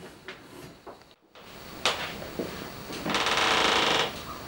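A few light knocks, then a loud rapid rattling buzz lasting about a second near the end.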